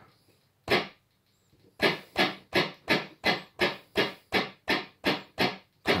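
Electronic handclaps from a SynClap analogue handclap generator, triggered by taps on its piezo disc. One clap comes about a second in, then a steady run of about eleven claps at roughly three a second.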